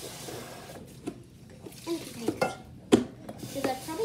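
Plastic clicks and knocks of a powdered infant formula can's lid being handled and closed, with items set down on a kitchen counter. The sharpest click comes about three seconds in.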